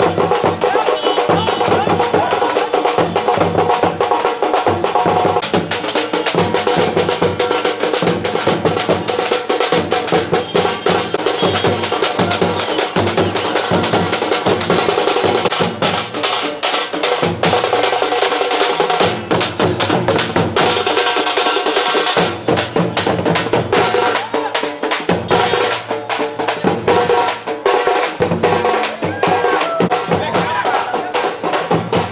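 Procession drums beaten loudly in a fast, dense rhythm, with rapid sharp stick strikes throughout.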